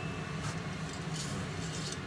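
Pot of water at a boil, bubbling steadily, with a few faint light knocks as a bundle of dry spaghetti drops in and fans out against the steel pot's rim.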